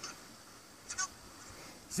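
A goose honking: two short honks in quick succession about a second in.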